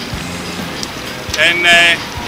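A man's voice, silent for about the first second and a half over a faint steady background, then resuming with a drawn-out, held vowel near the end.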